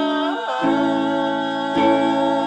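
Music: a voice singing over held instrumental accompaniment. About half a second in, the sung note slides down and the accompaniment breaks off briefly, then a new held chord comes in.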